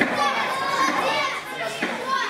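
High-pitched children's voices calling and shouting over one another, with one short sharp knock right at the start.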